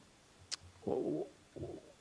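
A man's brief throat and mouth noises in a pause between words: a faint click, then two short rasping sounds without a clear pitch.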